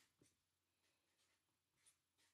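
Near silence, with the faint strokes of a felt-tip marker writing on paper.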